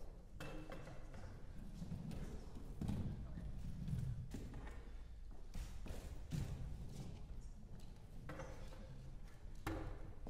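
Irregular footsteps, knocks and thuds on a wooden stage as chairs and music stands are shifted into place, with a few sharper clacks.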